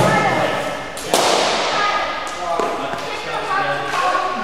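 Two sharp knocks that ring out in a large echoing hall, one at the start and a second, louder one about a second in, over background voices.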